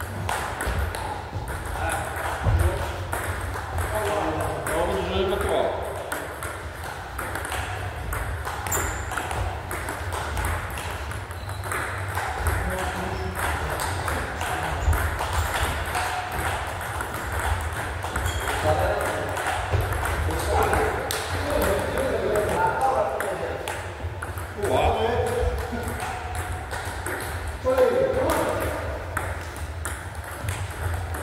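Table tennis rallies: the plastic ball clicking off the paddles and bouncing on the table in quick alternation, over and over.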